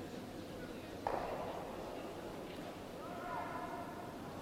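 Quiet curling rink ambience with one sharp knock about a second in that rings on briefly, then a faint distant voice calling near the end.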